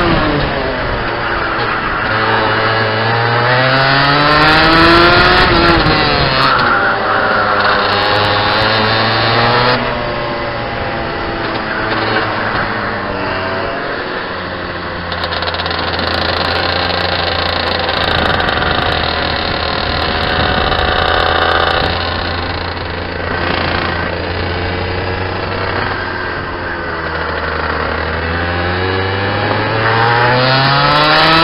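Rotax 125cc single-cylinder two-stroke kart engine heard onboard, its revs climbing and dropping again and again as the kart is driven through the corners. Through the middle stretch it holds a lower, steadier note, then climbs once more near the end.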